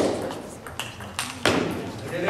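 Table tennis ball hit back and forth by rackets and bouncing on the table in a fast rally: a string of sharp ping-like clicks well under a second apart, the loudest at the start and about one and a half seconds in, each with a short echo.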